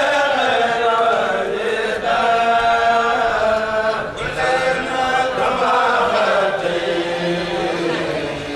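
A Mouride kourel, a group of men, chanting a khassida (devotional Arabic poem) together, with long held notes that move slowly up and down in pitch.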